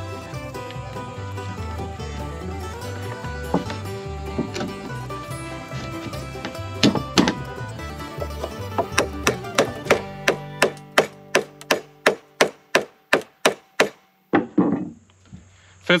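Background music, then from about nine seconds in a steady run of sharp knocks on wood, about three a second for some five seconds, as two notched 4x4 pressure-treated posts are knocked together into a tight lap joint.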